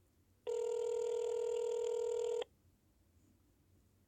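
Telephone ringback tone of an outgoing call heard on speakerphone: one steady two-second ring about half a second in, then quiet. The number is ringing and has not yet been answered.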